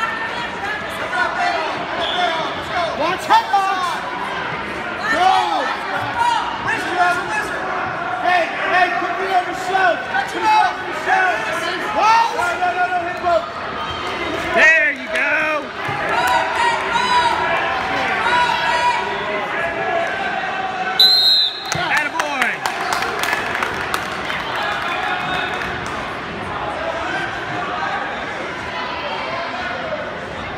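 Many overlapping shouting voices from coaches and spectators, with scattered knocks and thuds. About 21 seconds in, a referee's whistle blows once, short and shrill, as the bout ends.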